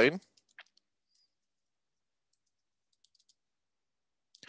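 Faint keystrokes on a computer keyboard: a few scattered clicks in the first second and a short run of them about three seconds in.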